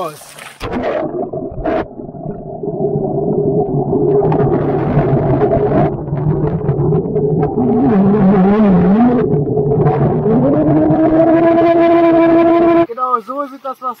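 Phone microphone submerged in a hot tub: a loud, muffled underwater rumble of moving water with a steady hum. A wavering voice comes through the water just past the middle and a held vocal tone near the end, and the sound cuts off abruptly as the microphone comes out of the water.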